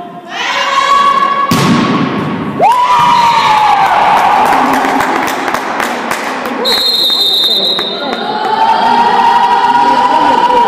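Young volleyball players and supporters cheering and shouting together in an echoing sports hall, with rapid clapping in the middle and long held cheers near the end. A shrill steady whistle sounds for about a second partway through.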